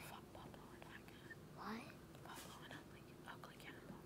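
Faint whispering among a team of children conferring over an answer, over a steady faint hum.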